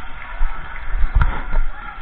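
Handling and movement noise from a body-worn action camera during play in a gym: irregular low rumbling knocks over a steady hum of hall noise, with one sharp smack a little over a second in.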